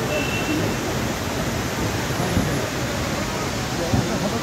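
Steady rushing noise under faint background voices.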